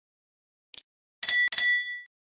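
A single mouse-click sound effect, then a small bell rung twice in quick succession and ringing out: the sound effect of a subscribe button and notification bell being clicked.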